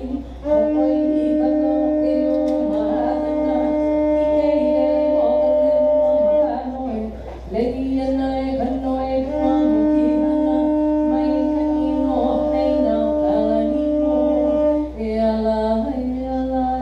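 Conch-shell trumpet (pū) blown in two long sustained blasts, each held about six to seven seconds. Between them comes a short break and an upward slide in pitch.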